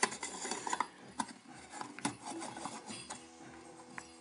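Small clinks, clicks and scraping of a large glass incandescent projector bulb being handled and set into its ceramic socket. The clicks come thickest in the first two seconds and then fade to light rubbing.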